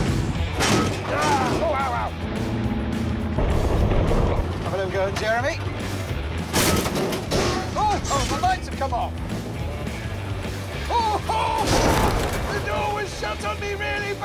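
A demolition-derby truck's engine running with heavy metal crashes of collisions, about three of them, mixed with music and a voice.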